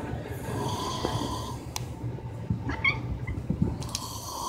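A domestic cat purring steadily close to the microphone, a low continuous purr.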